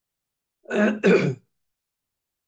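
A man clearing his throat in two quick rasps, a little under a second in.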